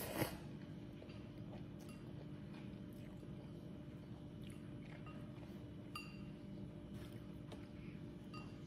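Noodles slurped up at the very start, then quiet chewing with a few faint clicks.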